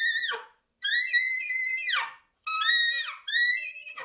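Soprano saxophone played solo, unaccompanied: a high held note ends with a falling smear, then after a brief silence a second long high note drops away at its end, followed by two shorter phrases that each bend downward in pitch.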